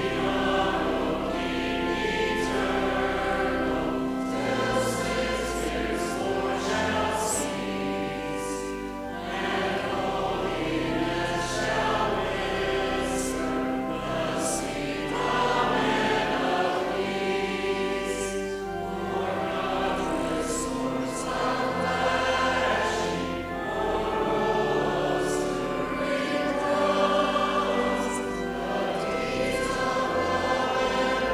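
A congregation and choir singing a hymn together, accompanied by a pipe organ holding long low bass notes under the voices.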